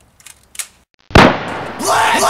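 A single loud gunshot-like bang about a second in, ringing out as it fades, after a few faint clicks. Near the end a voice begins a repeated rising-and-falling yell.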